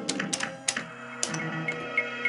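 A Hokuto no Ken pachislot machine plays its background music over a series of sharp clacks as its three spinning reels are stopped one after another within about a second and a half.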